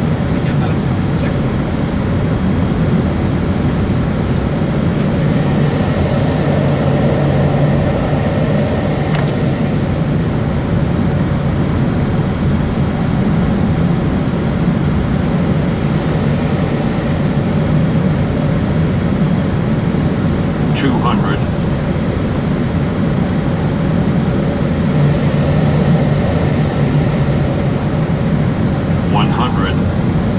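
Steady cockpit drone of an ATR 72-600's Pratt & Whitney PW127M turboprops and six-bladed propellers on final approach, with a thin high whine that slowly rises and falls in pitch.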